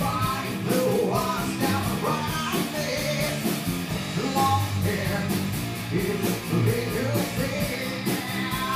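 Live rock band playing an original song: electric guitars and drums with a singer, in a small bar.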